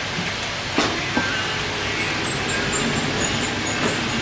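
Two sharp knocks about a second in, a meat cleaver striking the wooden chopping block as beef is cut, over a steady background din.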